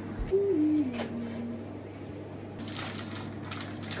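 A child's voice humming a single low note that steps down in pitch and is held for about a second, with a click partway through. A steady low hum runs underneath.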